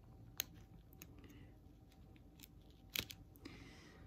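Faint, sharp clicks of an X-Acto knife blade cutting through the padded weather seal along the canvas edge, a few scattered cuts with the loudest about three seconds in.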